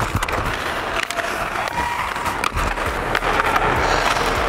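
Hockey skate blades scraping and carving on the ice, heard close through a player's body microphone, with many sharp clicks and taps of a hockey stick on the puck and ice.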